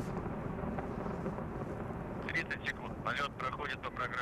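Distant, steady low rumble of a Proton-M rocket's first-stage engines during ascent, with sharper crackling sounds in the second half.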